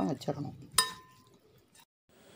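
A single sharp clink on the ceramic plate of marinating fish, ringing briefly, a little under a second in.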